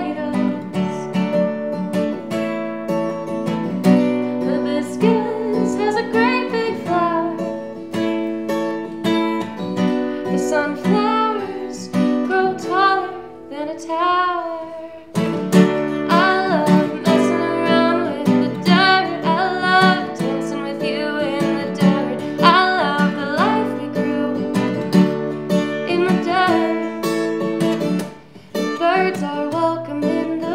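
Acoustic guitar strummed while a woman sings a song. About halfway through the guitar thins out under a held vocal line, then comes back in with a strong strum.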